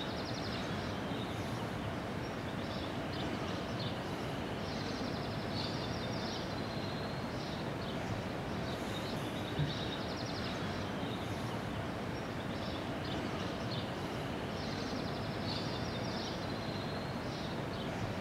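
Steady outdoor background noise with short, high-pitched trills recurring every few seconds.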